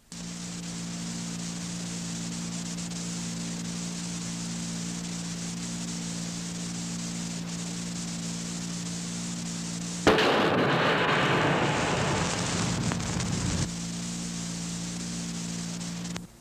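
Steady low electrical hum with hiss on an old film soundtrack. About ten seconds in, a loud burst of rushing noise starts suddenly, fades a little and cuts off abruptly after nearly four seconds.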